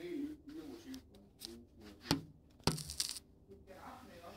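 Two sharp clicks about half a second apart, the second followed by a brief rattle, as a glass door next to the camera is handled. A faint voice is heard at the very start.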